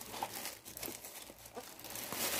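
Faint, irregular rustling and crinkling of paper craft materials being rummaged through by hand, with a few soft clicks.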